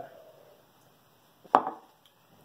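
A drinking glass set down on a desk: a single sharp knock about one and a half seconds in, after a quiet stretch.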